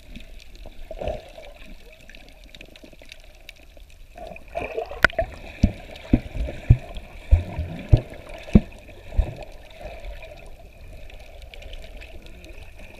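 Muffled underwater water movement and gurgling picked up by a submerged camera, with a series of short low knocks between about five and nine seconds in.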